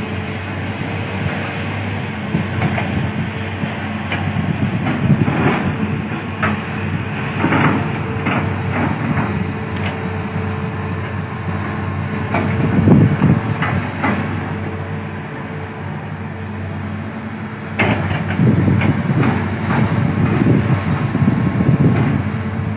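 Hitachi hydraulic excavators' diesel engines running steadily under load, with repeated knocks and clanks from the working machines and the palm material they are pushing over. It grows louder around the middle and again near the end.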